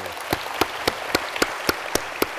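Audience applauding in a large hall, a steady patter of many hands with one set of louder, evenly spaced claps standing out at about four a second.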